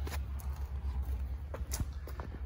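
A few faint clicks and a light knock from a helicopter ground-handling wheel as its lever handle is pulled down to raise the Robinson R66's skid off the floor, over a steady low hum.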